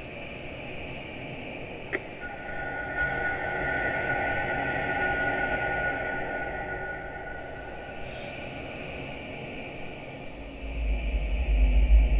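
Drone-like sounds from a live sound processing unit worked from an iPad: a click, then a held high tone over a hazy wash, with a brief high sweep. Near the end a much louder deep, low drone comes in.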